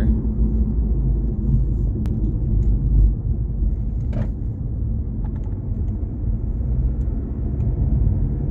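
Steady low rumble of a car's engine and tyres heard from inside the cabin while driving slowly, with a couple of faint brief ticks.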